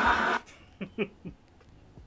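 Audience laughter from a stand-up comedy recording, cut off abruptly about half a second in when the video is paused. A man then gives a few short, soft chuckles.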